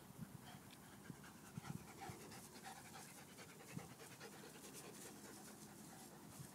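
A dog panting rapidly and faintly.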